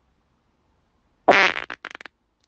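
A human fart, a little over a second in: one loud, pitched opening blast, then a few short sputters.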